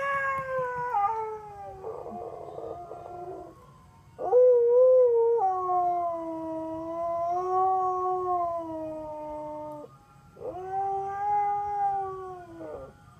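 Siberian husky howling in response to an ice cream truck's tune: three long howls, each sliding a little lower in pitch. The first starts at the opening and trails off, the second and loudest begins about four seconds in and is held for over five seconds, and the third starts near the end.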